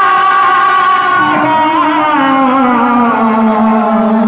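A woman singing one long held note of kirtan through a PA, the pitch wavering and sliding slowly downward.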